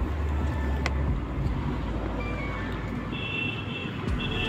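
Low rumble of a vehicle passing on the road for about the first second, then steady outdoor traffic noise. A steady high tone comes in near the end.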